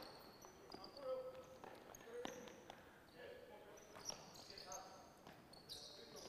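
Faint sounds of basketball players running a passing drill on a gym court: short high sneaker squeaks and a few ball thuds.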